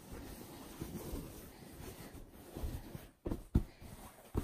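Cloth rustling and rubbing as a fabric cushion cover is handled and its flap folded over the cushion insert, with two short bumps about three and a half seconds in.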